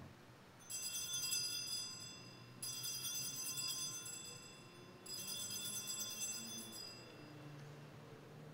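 Altar bells (Sanctus bells) rung three times, each high, bright ring fading out over about two seconds, marking the elevation of the consecrated host at Mass.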